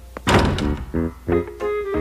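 A cartoon thunk of the front door slamming shut, followed by a short music cue of several separate notes.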